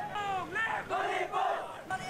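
A crowd of student protesters shouting together, several raised voices overlapping.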